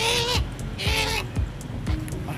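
Crow held in the hand cawing twice, about a second apart.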